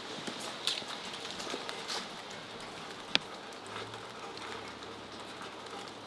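Steady rain falling, with footsteps on wet concrete in the first couple of seconds and one sharp click about three seconds in.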